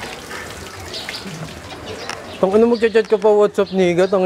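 A man's loud voice in long held notes, starting about two and a half seconds in, over a low murmur of street background.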